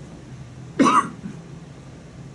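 A single short cough from a person, a little under a second in.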